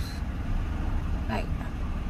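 Steady low rumble of an idling vehicle, heard from inside the cab.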